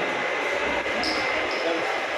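Overlapping chatter of a group of men talking together, with a faint steady high tone running underneath.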